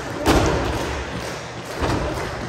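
Blows landing between pro wrestlers in the ring: a loud smack with hall echo about a quarter second in, and a second, weaker one near the end.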